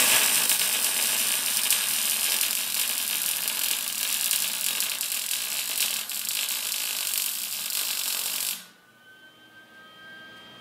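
An electric arc welder running a bead on steel bed-frame angle iron, a steady crackling sizzle from the arc that stops abruptly near the end.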